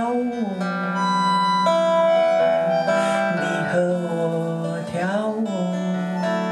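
A woman singing long held notes without clear words, with pitch slides at the start and about five seconds in, over a strummed acoustic guitar in a live performance.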